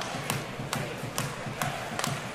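Ice hockey sticks clacking on the puck, sharp clicks about every half second, over a steady arena crowd background.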